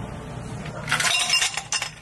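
Ice cubes tipped from a metal scoop into a glass tumbler, clattering and clinking against the glass for about a second, starting about a second in.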